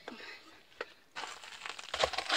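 A rough scraping rustle that starts a little past halfway as a loaf is slid on a peel into a wood-fired clay bread oven, after a single sharp click.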